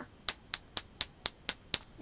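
Seven quick finger snaps on an even beat, about four a second, counting in a fast tempo.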